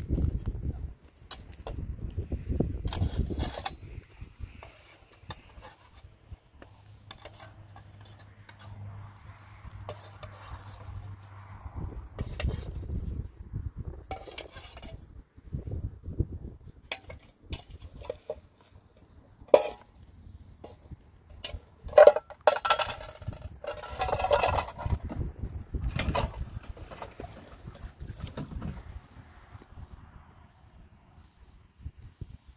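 Cookware handled at an open wood fire: a metal cooking pot and a plastic colander knocking and clinking, in scattered short clicks, with a run of louder sharp knocks about two-thirds of the way through.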